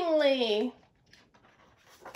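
A woman's voice gliding down in pitch for under a second with no words, then faint small handling sounds, and near the end the papery rustle of a picture-book page being turned.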